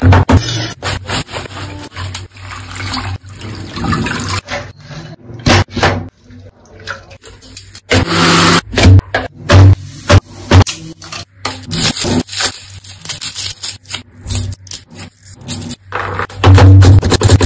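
Background music with a steady beat over quick kitchen sounds: a large knife cutting through a block of paneer in sharp strokes, then a blender running briefly as it purées spinach about halfway through.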